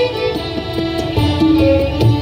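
Ensemble of violins playing a melody together in held, bowed notes, accompanied by tabla whose deep bass-drum strokes come about once or twice a second.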